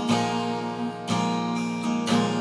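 Guitar in open D tuning strummed twice, about a second apart, each chord left ringing.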